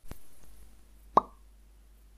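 A single short, bright pop about a second in, like a cartoon pop sound effect, over a faint low hum.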